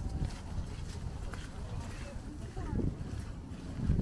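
Outdoor street ambience: low wind rumble on the microphone, with faint talk from passers-by.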